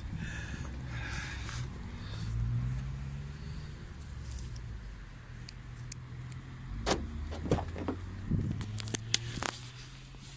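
A steady low engine hum, rising slightly about two seconds in, then from about seven seconds in a run of sharp clicks and knocks as a car door is unlatched and opened, with keys jangling.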